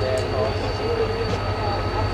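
An approaching train with a low, steady rumble, and a thin steady high tone over it.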